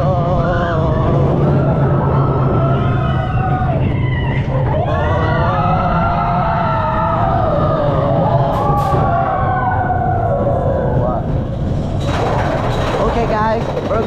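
Mine-train roller coaster rumbling along its track while riders shout and whoop in long drawn-out calls. Near the end a rhythmic clattering starts as the train reaches a lift hill.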